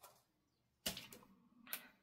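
A few short clicks and crackles as a strip of paper washi tape is handled and peeled, the loudest just under a second in.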